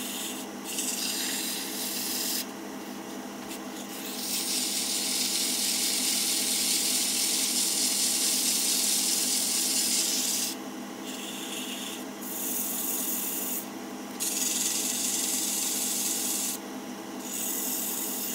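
100-grit sandpaper held by hand against a small maple turning spinning on a wood lathe: a hiss of paper on wood over the lathe motor's steady hum. The hiss comes and goes as the paper is pressed on and eased off, with its longest stretch starting about four seconds in and lasting some six seconds.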